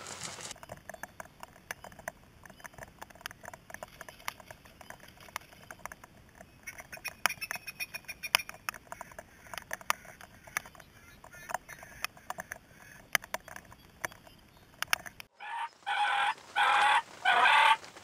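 Faint, scattered light ticks for most of the clip, then near the end a wild turkey calling four times in quick succession, loud and close.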